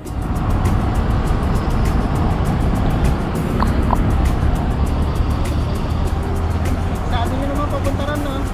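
Steady roadside traffic noise with a low rumble, and a voice faintly coming in near the end.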